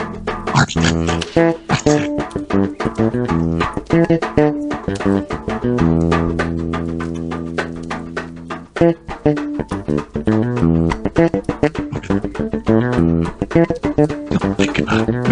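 Bass guitar and guitar played live: a run of quick plucked notes, with one long held low note from about six seconds in that lasts nearly three seconds.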